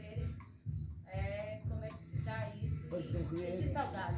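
A voice speaking over background music with a steady bass beat of about two beats a second.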